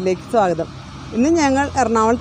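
A woman speaking Malayalam to the camera. A low, steady rumble comes in underneath about halfway through.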